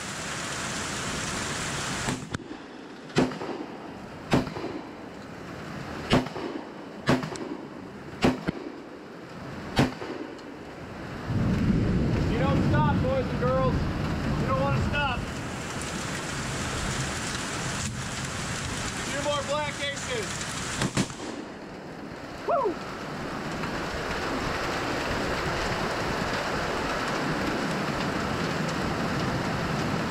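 SDS Imports AKSA S4 12-gauge semi-automatic shotgun fired six times in quick succession, about a second apart, over steady heavy rain. After the shots a louder low rumble runs for about ten seconds under the rain.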